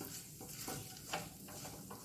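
Whole spices (bay leaves, cinnamon and cardamom) sizzling faintly in hot oil in a non-stick frying pan, stirred with a silicone spatula. The stirring gives a few short, soft scrapes.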